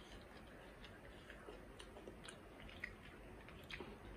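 Faint chewing of a fried momo, with soft mouth clicks scattered every half second or so.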